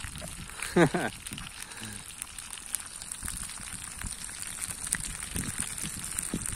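Fish pieces frying in hot oil in a pan over a wood campfire: a steady sizzle dotted with small crackles and pops.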